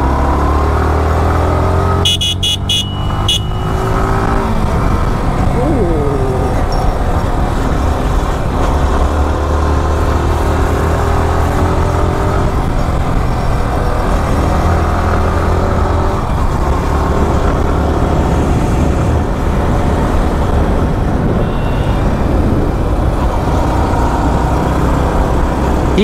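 Sport motorcycle engine running under way with wind rush on the microphone, its pitch rising and falling as the bike accelerates past a car. A few short horn beeps sound about two seconds in.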